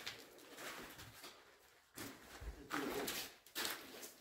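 Footsteps crunching and rustling over loose paper sheets and debris on a floor, irregular and louder from about halfway through.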